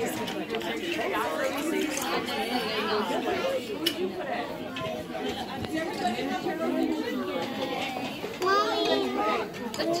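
Crowd chatter of children and adults talking over one another, with a louder, high child's voice standing out near the end.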